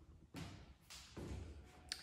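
Faint footsteps on a hardwood floor: a few soft steps about a second apart, with a brief click just before the end.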